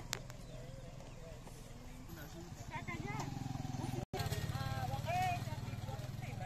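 Women's voices talking and calling out over a steady low hum, with a brief dropout about four seconds in.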